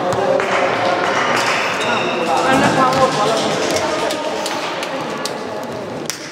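Many overlapping young voices chattering in a large, echoing sports hall, with a few scattered knocks of a handball bouncing on the wooden floor.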